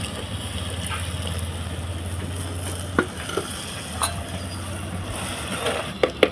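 Water poured from a steel jug into a clay pot of hot frying cherry tomato chutney, sizzling, with a few sharp clicks from a spoon stirring against the pot.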